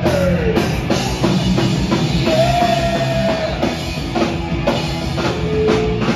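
Hardcore punk band playing live: electric guitar, bass guitar and drum kit at full volume.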